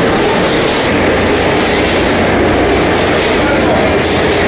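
Automatic packing line running on a factory floor: conveyor belts and packaging machinery making a loud, steady mechanical noise.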